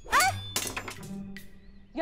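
A thrown knife landing with a thunk, over background music.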